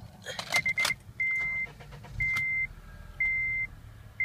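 A 2010 Acura RDX's key clicking and turning in the ignition, then the car's door-open warning chime beeping steadily, one half-second beep a second, as the four-cylinder turbo engine starts underneath with a brief low swell about two seconds in.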